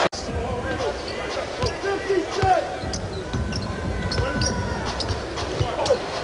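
Basketball game sound in an arena hall: a ball bouncing on the hardwood court over a steady crowd murmur with scattered voices. The sound drops out for an instant just after the start.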